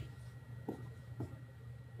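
Faint marker strokes on a whiteboard as a dollar figure is written, with two short strokes standing out about two-thirds of a second and just over a second in.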